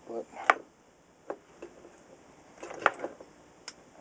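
Sharp metal clicks and taps from a radio tuning capacitor being worked loose from an old circuit board by bending its thick metal tabs. The loudest click comes about half a second in, with a cluster of them near three seconds.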